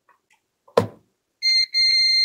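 Digital multimeter's continuity buzzer giving a steady high-pitched beep, starting about one and a half seconds in after a brief false start, as the probes find a direct connection between the two test points.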